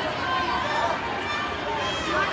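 Spectator crowd in a large hall: many overlapping voices talking and calling out at once, at a steady level.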